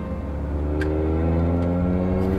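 A vehicle engine accelerating, its pitch rising steadily.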